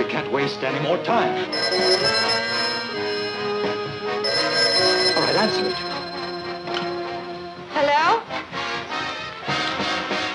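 Orchestral film-score music plays throughout. Over it, a telephone bell rings for several seconds through the middle, in two long rings, the second starting about four seconds in.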